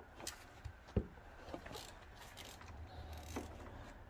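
Faint, scattered clicks of a ratcheting box-end wrench turning out an 8 mm timing-cover bolt, with one sharper click about a second in.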